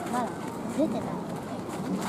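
Several short, distant shouts from voices on and around a football pitch, over steady outdoor background noise.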